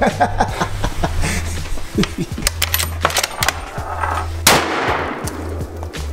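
Rifle gunfire at an outdoor range: scattered sharp cracks and one loud shot about four and a half seconds in, with a ringing tail. Background music with a stepping bass line plays throughout, and a man laughs briefly about midway.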